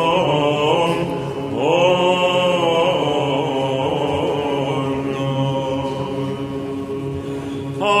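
Byzantine chant (psaltiki): a sung melody line held over a steady low drone (the ison), sliding up into a new phrase about two seconds in and swelling louder near the end.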